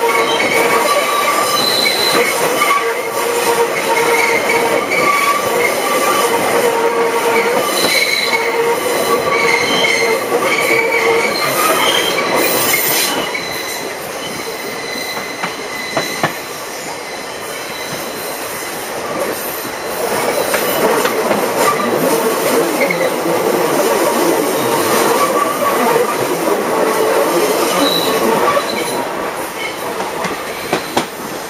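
Passenger coaches of a steam-hauled train running along the track, heard from a carriage window, with the wheels squealing on curves in long, high, steady tones through roughly the first twelve seconds and again after about twenty seconds. The running goes quieter in between, with two sharp clicks about sixteen seconds in.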